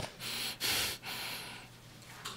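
Two audible breaths close on a clip-on microphone, the second a little longer, then faint room noise.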